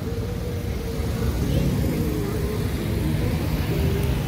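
Steady outdoor street background noise: a low rumble typical of traffic, with a faint hum held underneath.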